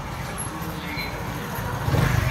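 Motorcycle engine running close by, growing louder near the end as it comes nearer.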